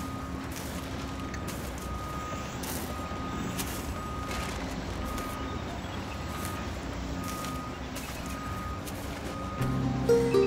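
Reversing alarm of heavy landfill machinery, a short high beep repeating about once a second over a low engine rumble, with scattered clicks. Music comes in near the end.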